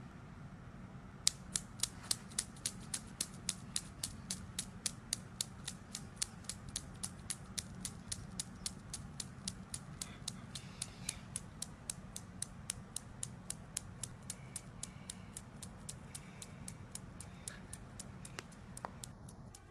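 Newton's cradle: its steel balls clicking against each other in a steady rhythm of about four clicks a second, starting about a second in and slowly fading as the swing dies down.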